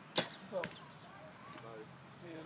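A recurve bow loosing an arrow: the string snaps forward with one sharp crack just after the start. The shot went off before the archer meant to release.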